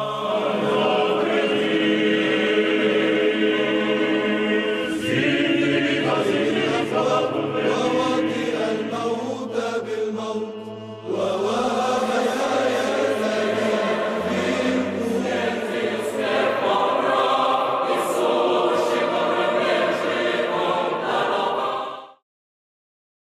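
A choir singing slow church chant on long held notes as background music. There is a short dip about ten seconds in before a new phrase starts, and the singing fades out quickly at the very end.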